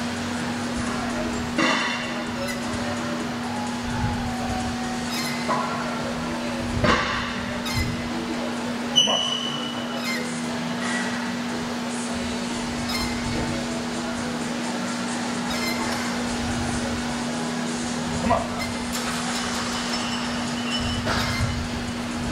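Gym room sound: a steady electrical hum under faint background music and distant voices, with a few sharp clanks of metal, the loudest about nine seconds in.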